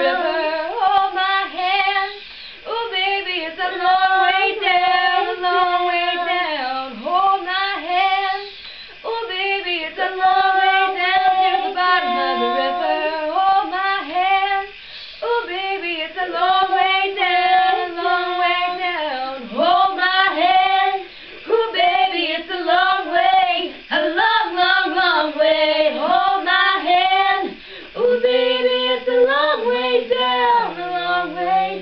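Young women singing the song unaccompanied, in held notes with slides in pitch and short breaks for breath.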